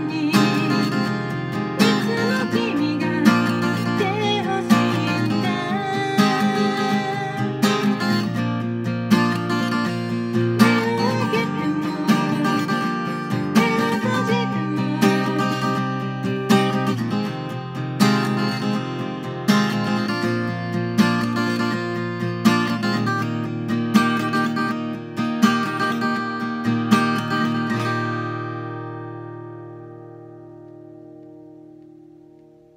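Cutaway acoustic guitar strummed in a steady rhythm. Near the end the strumming stops and the last chord rings out and fades.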